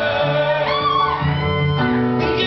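Live band music led by a guitar over a low bass line, with a short wavering melodic line partway through.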